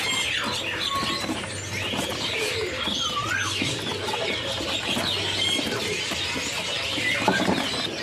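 A crowd of caged songbirds chirping and whistling at once, many short overlapping calls with one warbling whistle about three seconds in.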